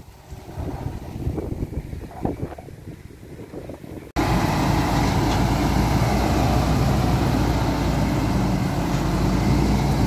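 Faint uneven rumble for about four seconds, then an abrupt jump to a loud, steady running of heavy diesel engines at close range, from a sugarcane grab loader and a cane truck.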